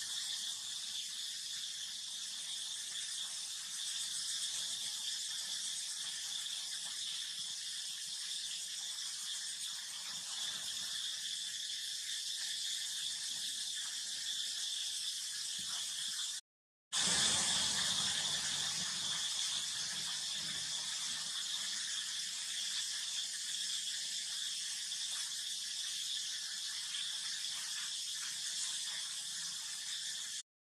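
Steady high-pitched drone of insects, constant in level, cutting out briefly about halfway through.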